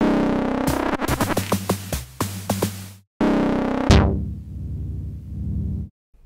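Reaktor Blocks Base modular synth presets being auditioned. First comes about three seconds of a sequenced pattern of short, sharp percussive hits over a stepping low bass line. After a brief break a second patch starts loud, with a fast downward filter sweep about a second in, then settles into a steady low buzzing drone that cuts off just before the end.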